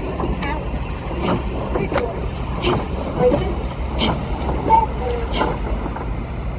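Steady low rumble of a motor launch running alongside a rowing eight, with irregular splashes of water and oar blades.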